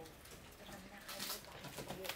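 A dove cooing faintly in the background, with a brief light rustle of plastic and cardboard about a second in.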